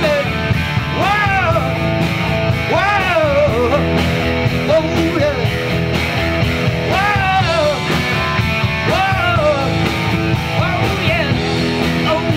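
Live rock trio playing an instrumental passage: electric guitar, electric bass and drum kit, with the lead line sliding up and falling back in repeated bent notes.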